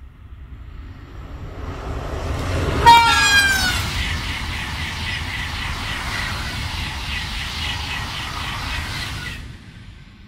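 Double-deck TGV high-speed train in Ouigo livery passing at speed. The rushing noise builds for about two seconds, with a brief tone falling in pitch as the front passes about three seconds in. A steady rush with an even beat of about two or three a second follows, and it cuts off sharply near the end as the tail goes by.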